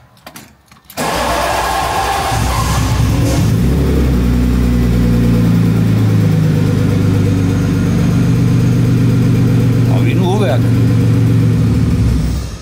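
Late-1990s BMW engine, left standing for years on fuel at least eight years old, starting about a second in, with a rough, noisy stretch as it catches, then settling into a steady idle.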